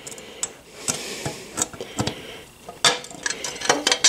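Metal clinking and light rattling as a skid plate's tube clamps, spacers and brackets are handled and fitted onto a motorcycle center stand's steel tube: scattered small clicks, with a sharper clank about three seconds in.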